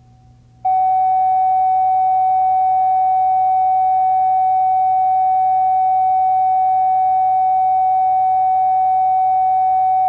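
Steady electronic reference tone, one unchanging beep-like pitch, starting abruptly about half a second in and held at a constant level, laid on the videotape under the segment's title slate. A faint low hum sits underneath.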